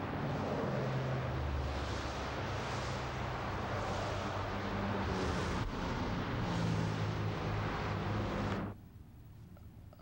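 Road traffic passing close by: a steady rush of tyre and engine noise over a low engine drone, swelling a few times as vehicles go past. It cuts off suddenly near the end.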